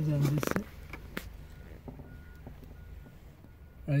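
A faint electronic warning beep at one steady pitch starts about a second and a half in and repeats about every 0.7 seconds. A short voiced sound comes at the start.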